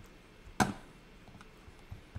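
A single sharp click of a computer mouse button, about half a second in, over faint room tone.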